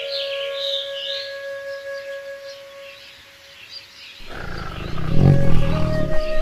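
Background music with a steady flute melody and bird chirps fades away. About four seconds in, a tiger's deep roar breaks in suddenly and is loudest near the end.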